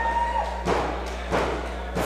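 A wrestling referee's hand slapping the ring canvas during a pin count, two slaps about two-thirds of a second apart. It is a quick pin count, called a fast count.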